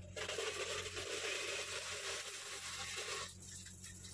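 A plastic zip bag full of Singapore coins being handled, the coins clinking and rattling against each other for about three seconds before stopping.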